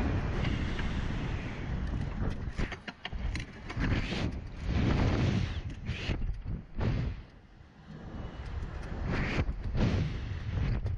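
Wind rushing over the microphone of the camera in a SlingShot reverse-bungee ride capsule as it swings and bounces through the air, rising and falling in gusts with a brief lull late on.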